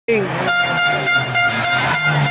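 An air horn sounding a long, steady note that pulses a few times a second, over the engine of a classic Mini approaching up the road.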